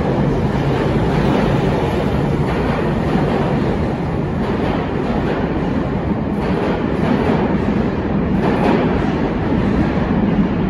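Tobu 50050 series electric train departing from an underground platform: steady running noise as the cars slide past, with a few wheel clicks over rail joints in the second half.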